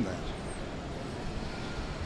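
Steady city-street background noise, a low even hum of traffic, with the last word of a man's question at the very start.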